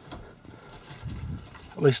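Mostly quiet, with a faint low murmur about a second in, then a man's voice begins speaking near the end.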